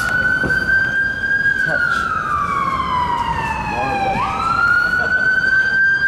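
Emergency vehicle siren wailing: the pitch falls slowly over about four seconds, then sweeps quickly back up and holds high near the end.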